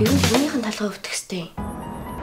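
A woman's voice speaking in a breathy, hushed way, cut off about a second and a half in by a steady background music bed with a held tone.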